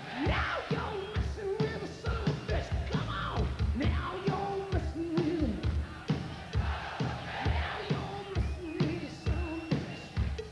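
Live hard-rock band playing with a steady drum beat, while a large open-air crowd sings and shouts along.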